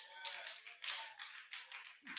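Faint, distant congregation response: scattered hand clapping with a few voices calling out.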